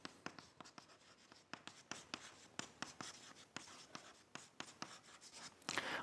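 Chalk writing on a blackboard: faint, irregular taps and short scrapes as words are written.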